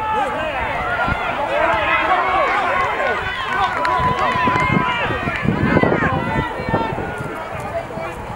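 Many overlapping voices of rugby players and sideline spectators shouting and calling across the field, with no clear words, and one long drawn-out call in the middle.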